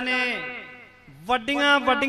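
Speech only: a man speaking Punjabi into a microphone, drawing out his words on a steady held pitch, with a pause just under a second long in the middle.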